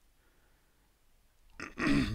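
Near silence, then a man coughs once near the end.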